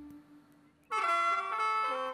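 Isan pong lang folk ensemble music breaks off, leaving almost a second of near quiet. A single instrument then plays a short phrase of notes stepping downward.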